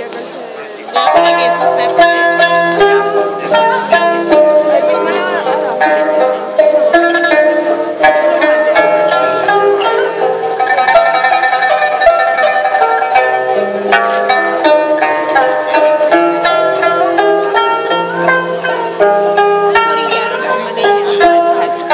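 Pipa and guzheng playing a plucked-string duet: quick plucked notes over lower held notes, soft in the first second and then louder.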